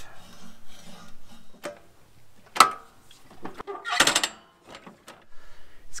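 The reel of a Toro Greensmaster 1600 greens mower is turned by hand against its bedknife, making a few sharp clicks and snips as the blades pass the bedknife. The sharpest click comes about two and a half seconds in, and a short rasping cut about four seconds in. These are the sounds of a reel-to-bedknife contact check, which should show light contact along the whole edge.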